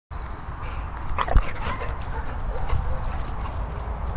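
An excited dog gives a short vocal sound about a second in, over a steady low rumble of wind on the microphone.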